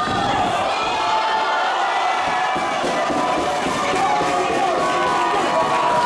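Wrestling crowd shouting and cheering, many voices at once at a steady level.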